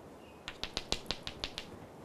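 Chalk tapping on a blackboard: about nine quick, sharp taps in just over a second as short dotted marks are dabbed onto the board.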